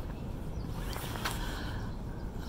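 Steady low outdoor background rumble, with a couple of faint short rustles about a second in.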